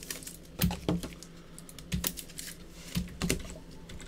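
Five light, sharp clicks and taps, spaced roughly a second apart, over a faint steady low hum.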